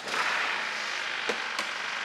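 Honda EU2200i inverter generator's small single-cylinder four-stroke engine running steadily just after being pull-started following a valve clearance adjustment, with two light clicks near the middle.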